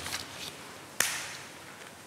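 Paper sticker sheet rustling in the hands, with one sharp rip about a second in as a sticker is peeled quickly off its backing paper.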